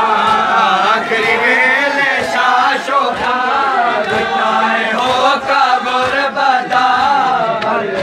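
A group of men chanting a mourning lament (noha) together, with sharp slaps of hands on bare chests (matam) striking through the chant.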